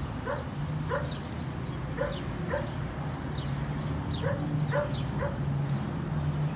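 A dog giving about eight short, high yips, irregularly spaced, each call dropping slightly in pitch, over a low steady hum.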